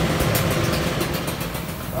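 Steady mechanical running noise with a low hum, like an engine idling in the background.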